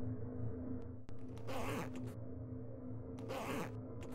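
The zipper of a black fabric shoulder bag being pulled twice, about a second and a half in and again near the end, each pull lasting about half a second. A low steady hum runs underneath.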